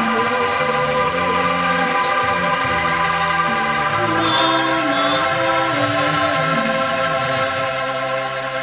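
An ensemble of bamboo angklungs being shaken, playing sustained chords with a slowly moving lower line.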